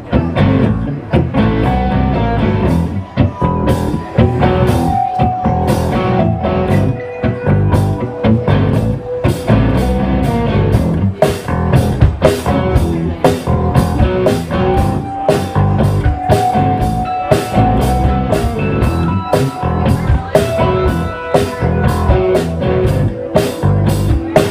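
Live rock band playing an instrumental passage: electric guitar lines over bass and a steady drum-kit beat.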